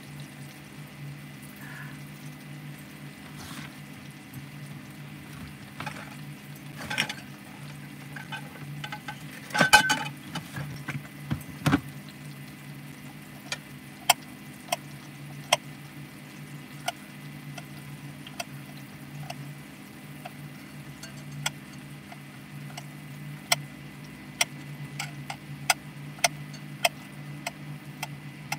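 A knife clicking against a ceramic plate while cutting food, sharp irregular clicks about once a second through the second half, with a few louder knocks a little earlier. Underneath, a steady low hum and the quiet sizzle of vegetables frying in a cast-iron skillet on turned-down heat.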